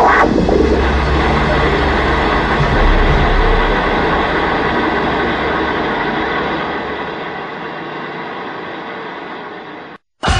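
A steady rumbling noise with a deep low drone underneath, slowly fading out over the last few seconds and then cutting off.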